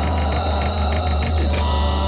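Dramatic background score music: a deep, sustained bass drone under held tones, with a fast, repeating shimmer higher up.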